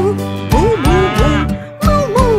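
Cow mooing 'moo moo moo' in time with a children's song, over its upbeat backing music.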